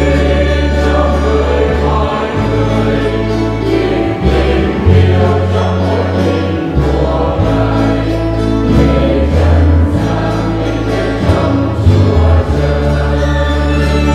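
Mixed choir of men's and women's voices singing a Vietnamese Catholic hymn, accompanied by electronic keyboard and guitars, with sustained bass notes changing every second or two.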